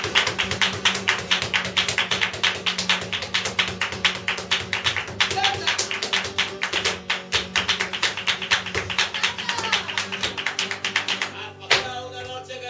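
Live flamenco: a fast, even rhythm of hand clapping (palmas) and dancer's percussive steps, about six strokes a second, over Spanish guitar. The percussion thins out near the end.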